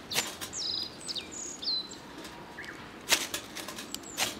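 Dry twigs snapping and dead leaves rustling as kindling is broken and packed into a metal fire pit by hand: two sharp snaps, the second near the end the louder. In between, a few short high bird chirps.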